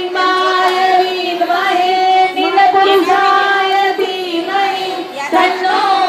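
Women singing a devotional song into microphones, holding long notes in a slow, steady melody with brief breaks between phrases.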